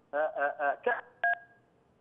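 A man talking over a telephone line, with a short two-tone keypad beep cutting across his voice about a second in.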